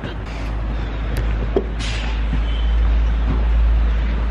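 Wind buffeting a phone's microphone: a deep rumble that builds up over the first couple of seconds and stays loud, with a few faint knocks as the phone is swung around.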